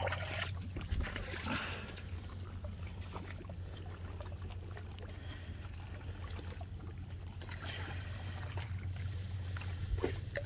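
Shallow tide-pool water sloshing and trickling as someone wades through it, with soft splashes near the start, about a second and a half in and again near the end, over a steady low rumble.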